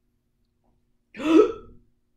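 A woman hiccups once, loudly, a little over a second in, in the middle of a bout of hiccups.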